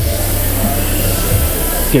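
Steady loud hiss with a low hum underneath, with faint background music.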